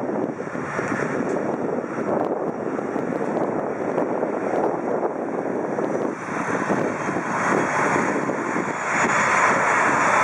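ATR 72-500 twin-turboprop airliner taxiing with its propellers turning, a steady engine and propeller drone that grows louder near the end.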